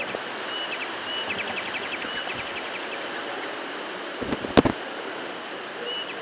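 Steady hiss of outdoor ambience with faint high chirps, including a quick trill a little over a second in, and one sharp click about four and a half seconds in.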